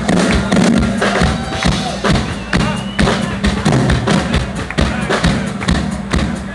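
Live rock band playing amplified: electric guitar over drums hitting a steady beat, about two hits a second.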